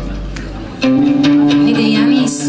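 Live folk band music: a plucked lute and a double bass playing, swelling suddenly louder with new sustained notes about a second in.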